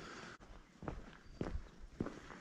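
Footsteps of a person walking at an even pace on stone paving, a few steps about half a second apart.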